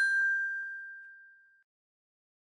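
A single bright ding, a bell-like chime sound effect, struck once and ringing out as it fades away over about a second and a half.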